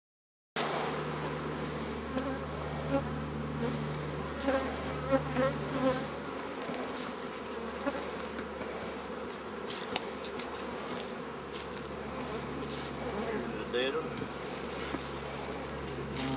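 Swarm of honeybees buzzing around an open hive: a steady hum that starts suddenly about half a second in, with single bees whining past the microphone and a few light clicks near the middle.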